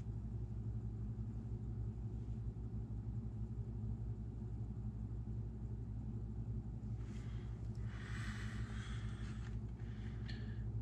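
A steady low hum with an even throb. From about seven seconds in, a soft hiss for a couple of seconds.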